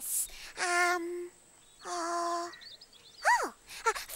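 A puppet character's voice making wordless sounds: two steady held notes, then a short call that rises and falls in pitch near the end.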